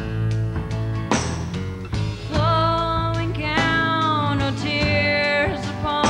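Live acoustic band music: steel-string acoustic guitar strummed over bass and drums, with a cymbal crash about a second in. A woman's voice comes in singing about two seconds in and carries on to the end.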